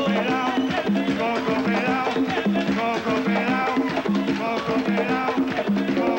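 Live Afro-Cuban rumba: conga drums (tumbadoras) play a steady, repeating pattern while voices sing over it.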